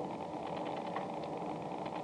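Low, steady hiss and hum of an old recorded telephone line, with no voices on it.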